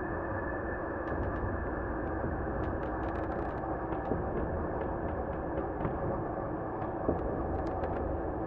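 Mixed dark ambience soundscape: a steady low rumbling drone holding several low tones, with scattered faint clicks and ticks over it and one sharper tick about seven seconds in.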